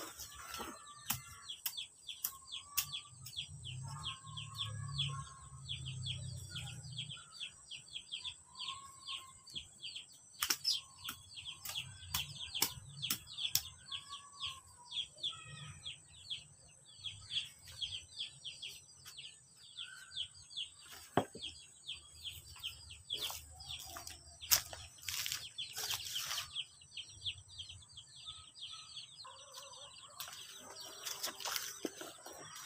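Chickens clucking softly over continuous high, rapid chirping, with a few sharp knocks along the way.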